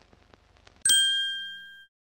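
Intro sound effect: a single bright metallic ding a little under a second in, ringing on a few high tones and fading for about a second before cutting off sharply. Faint ticks come before it.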